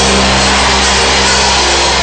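Background music: a low sustained keyboard chord held steadily under a dense, even noise, with no speech.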